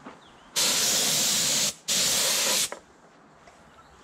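Compressed-air paint spray gun firing two bursts of about a second each, a loud even hiss of air and atomised paint with a brief gap between the trigger pulls.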